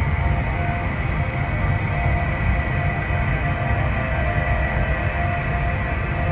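The 2012 Fisker Karma's external pedestrian-warning sound playing through its rear 'Hybrid HZ' speakers: a steady synthetic hum made of a low rumble and a few held tones. It stays even, without changes in pitch or level.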